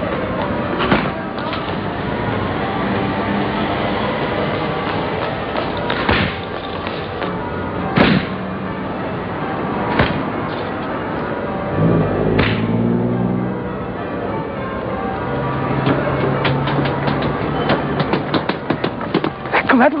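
Fireworks going off: single bangs every couple of seconds, then a fast run of crackling cracks near the end, over steady tones that could be music.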